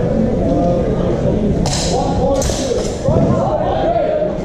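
Indistinct voices talking in a large, echoing sports hall, with two short hissing sounds about two seconds in.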